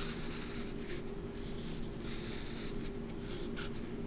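Sharpie felt-tip marker drawing lines on paper, a scratchy rasp in several short strokes as a grid is ruled out, over a steady low hum.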